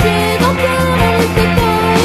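Punk rock band recording playing, with a steady drum beat under pitched instruments.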